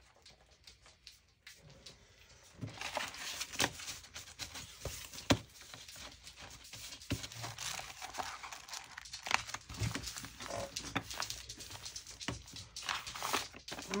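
Paper pages rustling and sliding as they are handled and folded, starting about two and a half seconds in, with a few sharp taps among them, the loudest about five seconds in.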